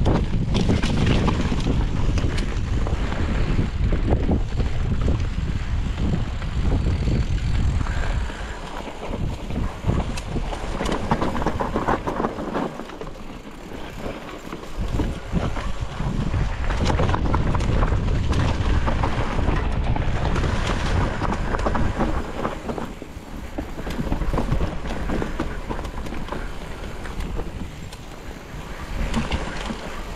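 Wind buffeting an action camera's microphone as a mountain bike is ridden along a trail, with frequent clicks, knocks and rattles from the bike and tyres over rough ground. The rumble eases off several times and then comes back.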